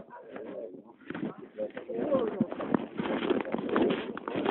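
Birds calling, with low voices murmuring in the background, heard through a narrow, phone-like sound band.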